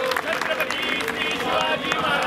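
Scattered audience clapping mixed with voices; the claps thin out after about a second.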